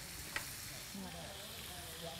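Strips of chicken breast frying with onions in a pan, a steady, quiet sizzle as they brown.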